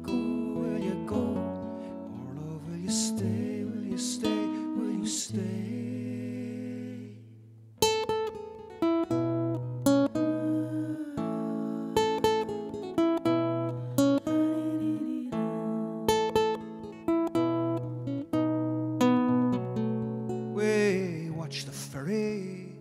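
Solo acoustic guitar playing an instrumental break in a folk ballad. It holds ringing chords, drops away briefly just before eight seconds in, then picks out single notes and chords with crisp attacks.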